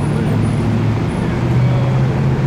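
City street traffic, with a large vehicle's engine running close by as a steady low drone that shifts slightly in pitch about a second in.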